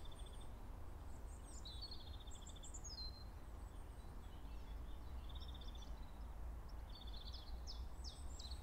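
Faint songbird calls: quick falling chirps and short buzzy trills in scattered bursts, thinning out around the middle, over a low steady hum.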